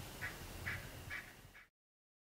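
A bird calling four times in an even series, about two calls a second, over a low background rumble. The sound cuts off abruptly near the end.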